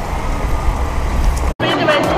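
Outdoor wind rumble buffeting the microphone, a steady low noise without clear voices, cut off abruptly about one and a half seconds in. Music and a voice follow it.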